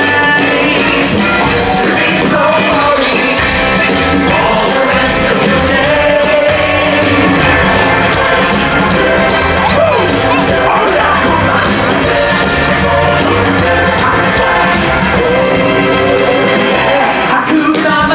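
Live stage-show music: a band with drums and singers performing a musical number, loud and steady.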